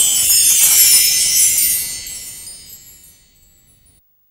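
Shimmering wind-chime-like sparkle sound effect, high and bright, fading away over about three seconds to silence.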